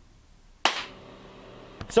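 A single sharp clap-like smack a little over half a second in, dying away quickly, then faint room tone with a steady low hum.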